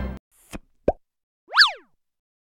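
Cartoon-style sound effects after the background music cuts off: a faint click, a quick plop, then a bright chirp that rises and falls in pitch.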